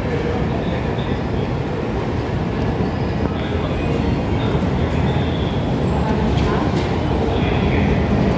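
Metro train running in the station, a steady low rumble that grows slightly louder toward the end.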